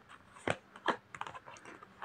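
Tarot cards being shuffled by hand: a few sharp card slaps and clicks, then a quicker run of fainter ones near the end.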